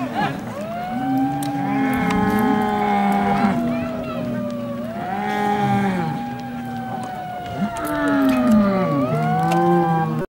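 Two bulls bellowing in long, overlapping moans while fighting head to head, one low and one higher, each call sliding slowly down in pitch. The calls come in about three waves.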